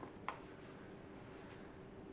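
Two faint short clicks near the start, about a quarter-second apart, as a soap bar is lifted out of a silicone mold in rubber-gloved hands, then quiet room tone.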